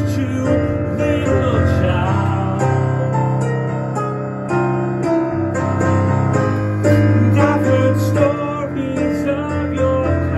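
Digital piano played with both hands: changing chords over a sustained bass, as an instrumental passage of a song.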